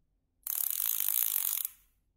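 Kenzi Marine KZ-200L overhead fishing reel ratcheting as line is pulled off the spool: a rapid, high buzz of clicks that starts about half a second in and stops after just over a second.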